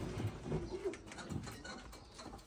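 Faint pigeon cooing around the loft, with a few light clicks and rattles.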